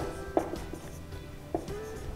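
Soft background music with steady held tones, with a few light taps of a marker on a whiteboard as letters are written.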